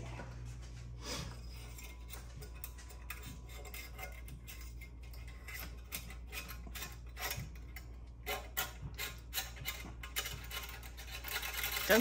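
A thin metal dipstick scraping and clicking against the inside of its tube as it is pushed down into the engine, catching and getting stuck on the way. Many small irregular clicks and scrapes over a steady low hum.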